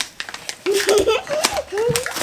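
A toddler's high voice vocalizing without clear words for the second half, over light rustling of paper wrapping as a present is handled.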